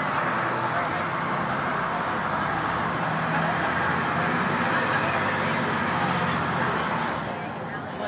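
International DT466 turbo-diesel of a 2006 IC CE school bus heard from inside the cabin, pulling under load with road noise, then easing off about seven seconds in.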